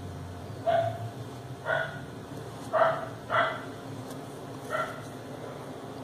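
A dog barking: five short barks, unevenly spaced.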